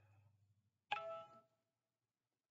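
A single short ding about a second in: a sharp strike with a ringing tone that dies away within half a second, amid near silence.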